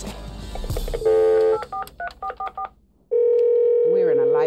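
Telephone dialed on speakerphone: a half-second tone, then a quick run of touch-tone key beeps as the number is dialed. After a brief pause a steady ringback tone starts about three seconds in as the call rings through.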